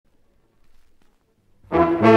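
Near silence with a few faint clicks, then about 1.7 s in a symphony orchestra's brass comes in suddenly and loudly at the start of the piece.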